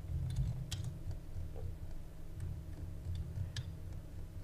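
A few faint, irregular computer mouse clicks over a low, steady hum.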